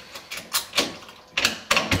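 A coded lock being worked and pulled off a steel rifle wall mount: a series of sharp metal clicks and clacks, coming closer together in the second half.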